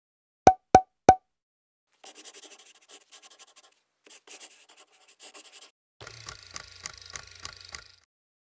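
Three quick, sharp taps in the first second, then pen-on-paper scratching in two short stretches as a hand writes, followed by faster rhythmic scribbling over a low hum near the end.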